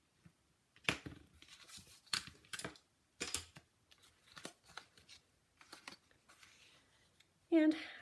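Card stock being handled on a tabletop: a bone folder creasing a folded card and sheets slid and patted flat, with a few sharp taps about a second in and a quick run of taps between about two and three and a half seconds in, and light paper rustling between.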